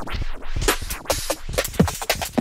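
Electronic drum loop at 140 BPM played through Bitwig's Delay+ while its delay time is swept in repitch mode, so the echoes of the hits slide in pitch with a scratch-like warble. The pitch shifts are the delay re-pitching its buffer as the delay time changes.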